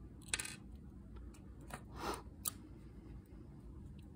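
Faint handling sounds with a few soft clicks, the sharpest about two and a half seconds in: metal tweezers and a small SO8-to-DIP8 adapter board being moved and set down on a wooden workbench.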